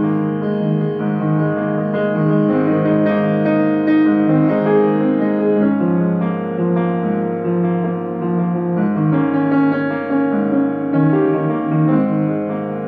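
Solo grand piano playing a jazz composition: a slow flow of full, held chords that change every second or so.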